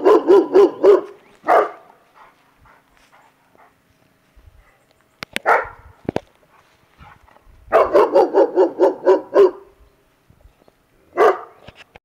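A large dog barking in quick runs of about five barks a second, once at the start and again for nearly two seconds about eight seconds in, with single barks in between.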